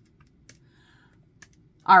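A few soft clicks of keys being pressed on a Casio scientific calculator, then a woman's voice starts at the very end.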